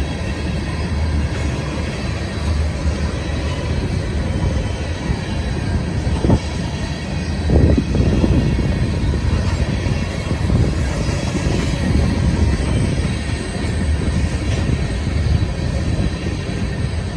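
Freight train of tank cars rolling past at close range: a steady low rumble of steel wheels on rail, with two sharp clanks a little before halfway through.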